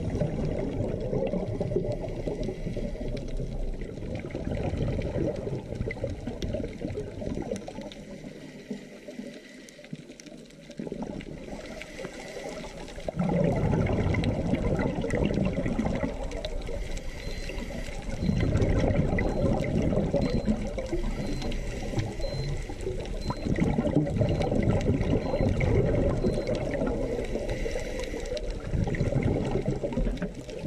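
Underwater sound of a scuba diver's breathing: surges of exhaled regulator bubbles about every five or six seconds over a steady water rush, with a quieter lull about ten seconds in.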